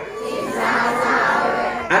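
An audience in a hall calling out together, many voices at once, rising to its fullest about half a second in and holding until the speaker resumes.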